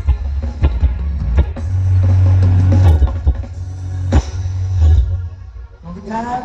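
Live ramwong dance band played through loudspeakers, with a heavy bass and a steady drum beat. The song stops just before the end.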